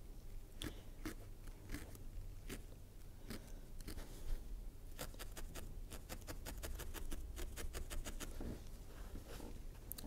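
A single barbed felting needle stabbing repeatedly into wool fibre, making faint crunchy pokes that quicken to about four or five a second in the middle.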